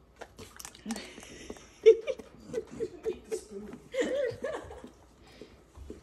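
A black Labrador puppy licking a spatula, with a quick run of short wet smacking licks. A person laughs softly through the middle.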